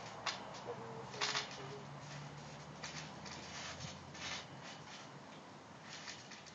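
Soft scuffs and rustles of a person moving about on a trampoline mat, a few short bursts, the strongest about a second in. A bird coos faintly in the background about a second in.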